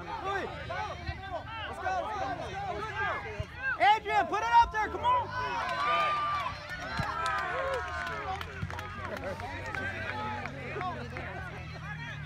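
Many overlapping voices of people at a youth soccer game talking and calling out at once, none clearly in front. The voices are loudest about four seconds in.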